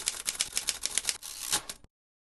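Rapid clatter of typewriter keys, about ten strikes a second, that stops abruptly just before the end.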